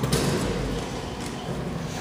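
Montgomery elevator's stainless-steel landing doors sliding open, a steady whooshing rumble.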